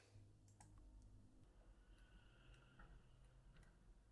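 Near silence: faint room hum with a few soft, scattered clicks.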